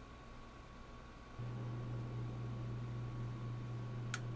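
Quiet indoor room tone with faint hiss. About a second and a half in, a steady low hum sets in abruptly and holds.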